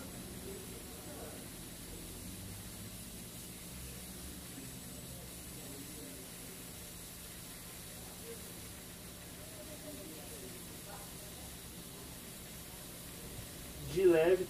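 Steady low hum and hiss of workbench equipment, with faint voices in the background.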